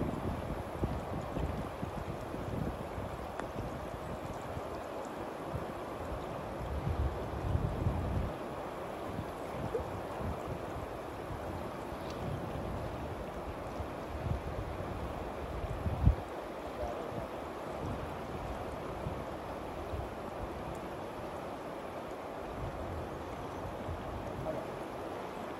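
Steady rush of a fast-flowing river running over riffles, with wind buffeting the microphone at times and a single brief low bump about two-thirds of the way through.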